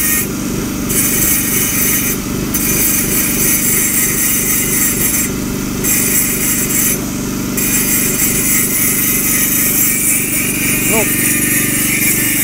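Handheld electric angle grinder with an abrasive disc grinding carved lettering off a polished stone plaque, its high grinding hiss easing off briefly four times as the disc leaves the stone. Under it a portable generator runs with a steady engine hum.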